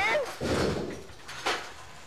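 Wooden bowling pins clunking as they are set by hand into a manual pinsetter's rack, with a rattle and then one sharp knock about one and a half seconds in.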